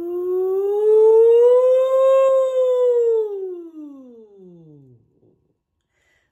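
A woman's voice singing one long 'ooh' vocal siren as a warm-up: it climbs slowly in pitch for about two seconds, then glides down low and fades out about five seconds in, loudest in the middle.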